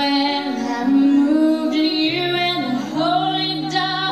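A woman singing a slow, held melody into a microphone, sliding between notes, over a strummed acoustic guitar in a live performance.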